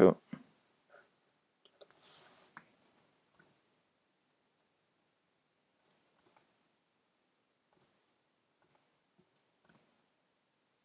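Faint computer mouse clicks, scattered in small clusters every second or two.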